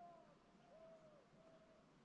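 Faint, soft calls from a duck: three short, clear notes in two seconds. The first falls, the middle one rises and falls, and the last holds level.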